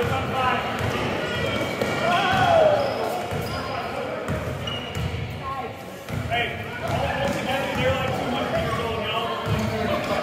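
Basketball dribbled and bouncing on a hardwood gym floor during play, with players and onlookers shouting and calling out over it.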